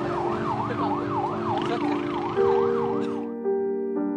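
Ambulance siren wailing in a fast yelp, rising and falling about three times a second. It cuts off abruptly near the end.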